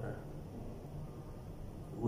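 A pause in a man's speech: faint room tone with a low hum, his voice trailing off at the start.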